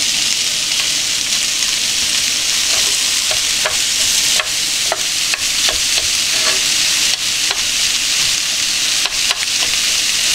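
Sliced vegetables and sausage sizzling steadily in a frying pan on the stove. From about three seconds in, they are stirred with chopsticks, which make scattered sharp clicks against the pan and the food.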